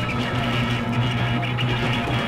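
Noise-punk rock music: a distorted electric guitar chord held and ringing steadily, with no drum hits or vocals.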